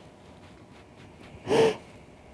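A woman crying: one short sobbing gasp about a second and a half in, against faint room tone.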